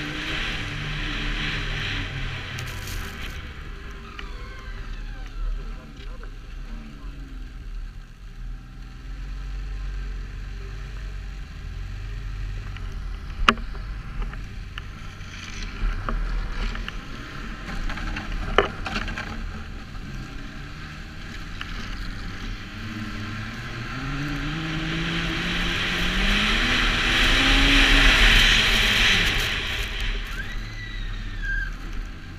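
Snowmobile engine running under a rider on a snowy trail, ticking over lower and quieter through the middle, with two sharp clicks about halfway through. Near the end it revs up with a steadily rising pitch as the sled accelerates, and rushing wind and track noise build to the loudest point.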